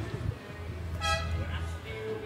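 A vehicle horn gives one short toot about a second in, over the low steady rumble of street traffic.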